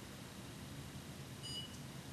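A single short, high electronic beep from a blood glucose meter about one and a half seconds in, the signal that the test strip has taken up the blood sample, over faint steady room noise.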